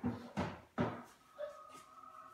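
Three short knocks, about 0.4 s apart, then a faint steady hum from a little past halfway.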